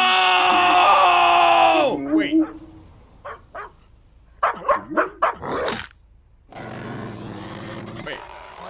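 A man's long, loud scream, held for about two seconds and dropping in pitch as it dies away. A few short, quieter sounds follow.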